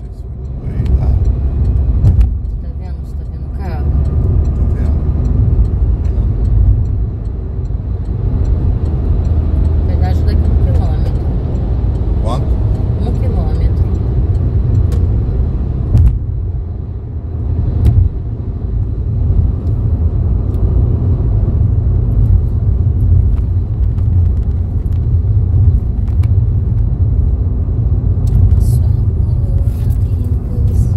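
Steady low rumble of road and engine noise from a car cruising on a highway, heard from inside the cabin.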